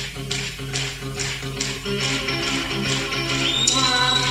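Instrumental music with a steady beat: held low notes under short, regular percussion strokes, and a rising high tone near the end.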